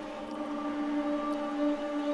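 Ambient background-effect layer from a house track's verse, played on its own: a held drone of several steady tones over a faint hiss.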